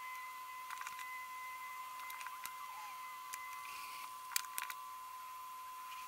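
Faint clicks and light scrapes of a small kitchen knife trimming the rib edges off a star fruit, the loudest pair of clicks a little past the middle, over a steady thin high tone.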